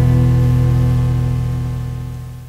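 The last chord of a song, mostly guitar, held and slowly fading, played back from a cassette tape.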